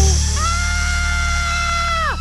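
Cartoon soundtrack: background music under one long, high, held note that swoops up at its start and drops away sharply at its end, like a cartoon cry or sound effect.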